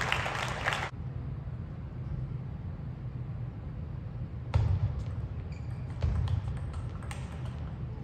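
Table tennis rally: the ball clicks sharply off the players' rubber-faced bats and bounces on the table in quick succession, starting about halfway through. Crowd noise in the arena cuts off about a second in, and a steady low hall hum runs underneath.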